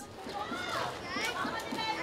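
Several children's high voices shouting and calling out over one another.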